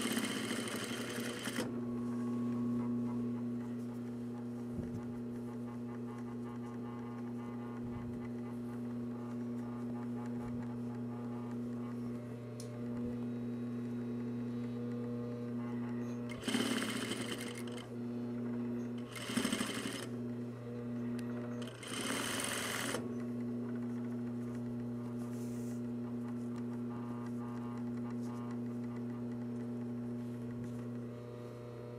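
Single-needle lockstitch sewing machine topstitching fleece: a steady motor hum throughout, with four short bursts of stitching, one near the start and three between about 16 and 23 seconds in.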